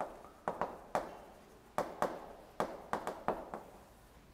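Chalk tapping and scratching on a chalkboard while a word is written: an uneven run of about a dozen sharp taps.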